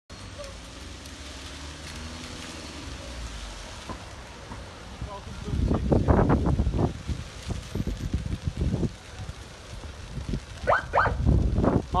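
Burning trees and brush of a forest fire crackling and popping over a steady low rumble, loudest in a dense burst of crackles about halfway through.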